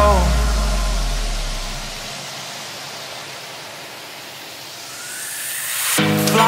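A breakdown in an electronic dance music mix: a deep bass note fades out over about two seconds, leaving a hissing noise sweep that dips and then swells again, with a rising whine in the last second before the full beat returns.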